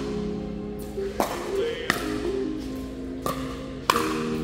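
Pickleball paddles striking a plastic ball in a rally: several sharp pops spaced about half a second to a second apart, the loudest a little over a second in and just before the end. Background music plays throughout.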